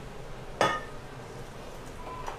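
A single sharp clink of kitchenware about half a second in, ringing briefly, over a low steady background.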